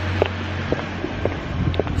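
Street traffic: a steady low engine rumble from a nearby vehicle that fades out in the second half, with wind buffeting the microphone and a few faint footstep ticks.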